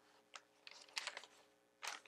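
Paper and card handled in a handmade junk journal: a few faint rustles and light taps, then a louder page-turning rustle near the end.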